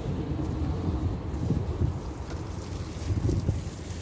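Wind buffeting the microphone, a low, gusty rumble that rises and falls.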